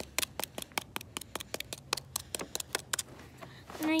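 A plastic utensil repeatedly stabbing and scraping into backyard dirt while digging a hole: rapid short strikes, about five a second, that stop shortly before the end.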